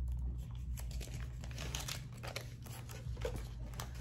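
Used vinyl transfer paper and backing scraps being crumpled by hand: a run of irregular light crinkles and crackles, over a steady low hum.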